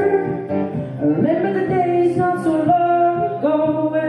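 A solo singer holding long sung notes over an acoustic guitar, live through a small PA.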